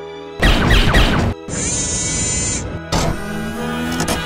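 Background music holding a steady chord, cut through by a volley of sci-fi laser-blaster shots that slide downward in pitch from about half a second to a second and a half in. A high hiss follows in the middle, then a sharp hit near three seconds.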